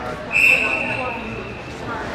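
A hockey referee's whistle blown once: a single high, steady tone lasting just over a second, loudest at the start and then fading. Arena chatter from voices runs under it.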